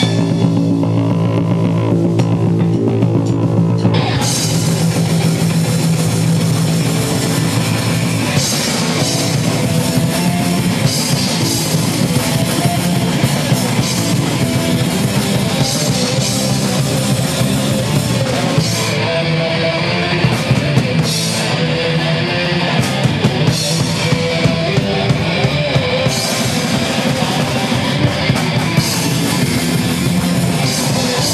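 Punk band playing live: distorted electric guitar, bass and drum kit. For the first few seconds the guitar and bass hold low notes on their own, then the drums and cymbals come in at full volume.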